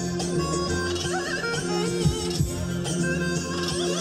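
Traditional folk dance music played on a shrill reed wind instrument: an ornamented melody over a steady held drone, with a few deep drum beats, two close together about two seconds in.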